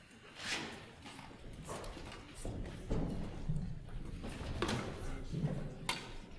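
Footsteps and scattered knocks on a hollow wooden stage floor as people walk about and shift chairs and stands, with voices murmuring in the hall.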